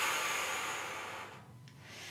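A woman's long, forceful breath out through the mouth, a whoosh like wind, starting strong and fading away over about a second and a half. It is the 'wind' part of a rain-and-wind breathing exercise, following the short 'pitter-patter' phrases.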